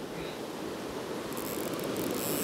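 Steady rush of fast river water running over a rocky bed, with a faint high hiss joining in past halfway.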